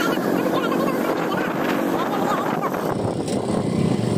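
Hero commuter motorcycle's small single-cylinder engine running steadily while riding on a dirt track, with road and wind noise; the engine sound grows louder about three seconds in.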